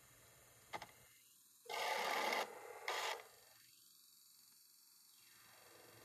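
Portable DVD player's disc drive seeking on the black screen between titles: a small click about a second in, then a short burst of noise and a second, shorter one about half a second later.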